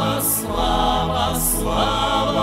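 Choir singing a slow Russian-language worship song in sustained chords, with two crisp hissing 's' consonants about a second apart.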